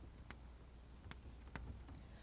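Chalk writing on a blackboard: faint, irregular taps and scratches of chalk strokes.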